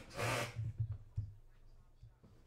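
Cardboard packaging being handled on the table: a brief scraping rub, then a few soft knocks.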